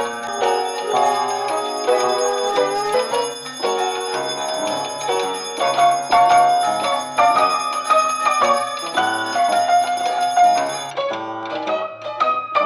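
A bell rings continuously over melodic music. The bell's high ringing stops abruptly about eleven seconds in, and the music carries on.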